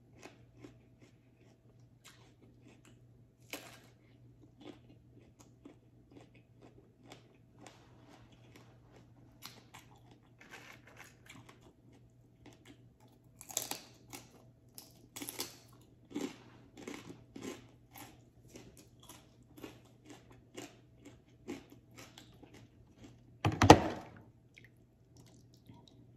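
A person chewing and crunching raw vegetables and green papaya salad close to the microphone, with many short crunches that come thicker in the second half. One much louder sharp sound stands out near the end.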